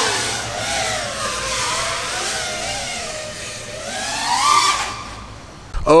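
FPV quadcopter's brushless motors and propellers whining, the pitch falling slowly as throttle eases off, then rising again with a burst of throttle before fading.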